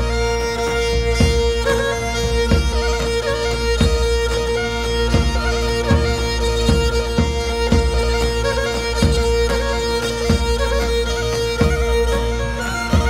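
Pontic lyra (kemenche) bowed with a steady drone held under the melody, over daouli drum strokes in an uneven, limping tik dance rhythm that comes round about every 1.3 seconds.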